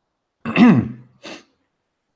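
A man clearing his throat at the microphone: a loud rasping sound falling in pitch, then a second, shorter and breathier clear about half a second later.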